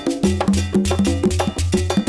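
Background music in an upbeat Latin dance style, with a quick, steady percussion beat over a repeating bass line.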